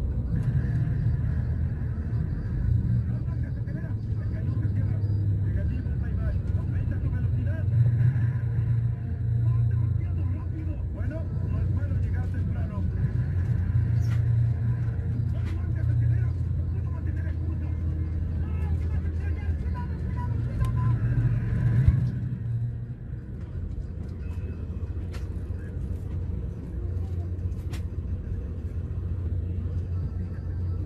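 Steady low engine and road rumble inside the cabin of a moving bus, with a few faint rattles and clicks. The rumble eases somewhat about two-thirds of the way through.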